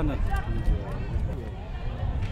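Faint voices over a steady low background rumble, following the end of a spoken word.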